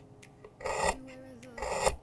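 A small kitchen knife slicing through a shallot onto a wooden cutting board: two cuts about a second apart, each ending in a sharp tap of the blade on the board.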